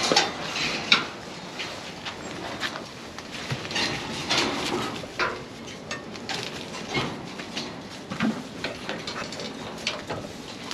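Steel grafting headgate and its chain clinking and clanking as they are handled, with a sharp clank about a second in, then scattered lighter clicks and rattles.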